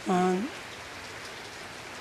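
A woman's brief hesitation sound, a short 'uh' rising at its end, then a steady, even background hiss.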